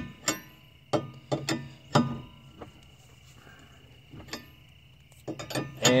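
Sharp metallic clinks with a short ring as a four-way cross lug wrench is turned on a lug nut, tightening it against a stack of makeshift washers to draw a new wheel stud into the hub. The clinks come irregularly, a handful early, a pause, then a quick cluster near the end.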